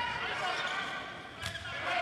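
A volleyball struck once, a single sharp hit about one and a half seconds in, with faint voices and the echo of an indoor hall behind it.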